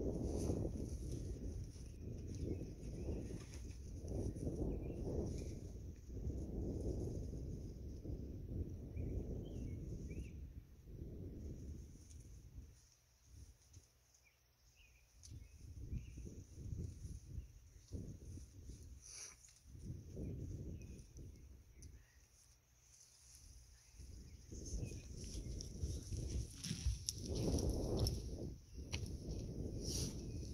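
Wind buffeting the microphone in gusts: a low rumble that rises and falls, dropping away briefly about halfway through and again a little later.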